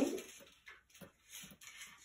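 Faint rustling and a few light taps as a packet of foam pads falls to the floor and is gathered up.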